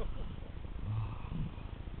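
Muffled low rumble of water and movement around a GoPro filming underwater, with a faint low voice or hum about a second in.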